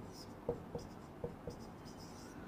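Marker pen writing on a white board: faint strokes with four short squeaks.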